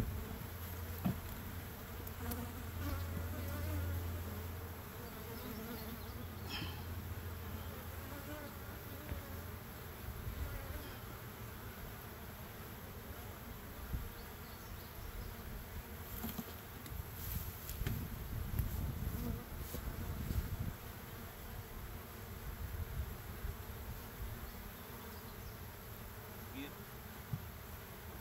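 Honeybees buzzing steadily around a hive crowded with bees that is running out of space. A couple of light knocks come from the wooden hive boxes being handled, about a second in and again midway.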